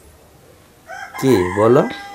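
A rooster crowing, loud, starting about a second in and lasting about a second, its pitch sweeping upward.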